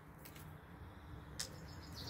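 A few faint clicks as a plastic wiring connector is worked loose by hand, the sharpest about one and a half seconds in.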